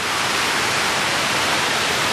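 Water cascading down a tall man-made waterfall fountain, a steady, even rush of falling water.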